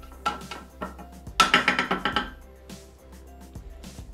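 Spatula scraping and clinking against the inside of a Thermomix's stainless-steel mixing bowl in a few short strokes, gathering powdered sugar down to the bottom, over soft background music.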